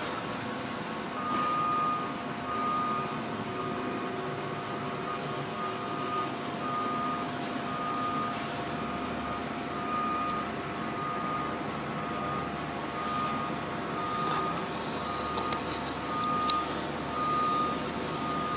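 A steady background hum with a high single-pitched beep repeating about once a second.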